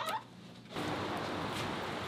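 A brief click from a hotel room door's lever handle, then a sudden cut to a steady, even hiss of outdoor background noise.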